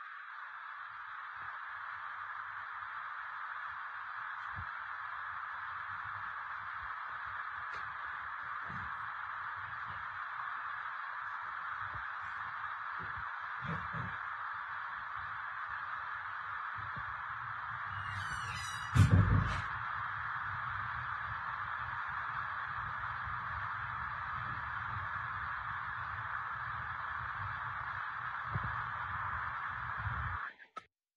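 Steady hiss of a security camera's audio track, with faint low knocks and rumble. There is one brief louder bump about nineteen seconds in.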